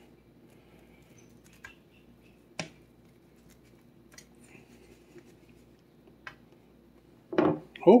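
A few faint, sparse clicks, the sharpest about two and a half seconds in, from a kitchen knife cutting a chicken-crust pizza and touching the metal pizza pan beneath it. A man starts speaking near the end.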